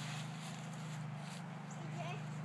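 Dry autumn leaves rustling faintly under a toddler's feet as he steps through a leaf pile, over a steady low hum.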